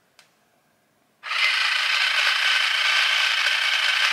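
Cordless rechargeable water flosser switched on about a second in, its small pump motor buzzing steadily with water hissing from the tip in the mouth. The spray is weak, which the users put down to the battery needing a charge.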